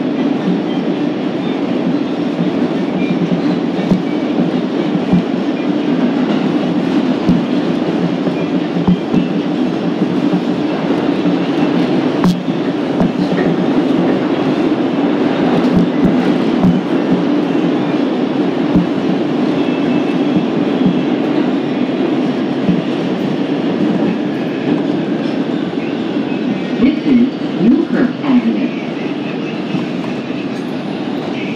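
Bombardier R142 subway car running at speed through a tunnel: a loud, steady rumble of wheels on rail with scattered sharp clicks from the track, growing a little quieter near the end.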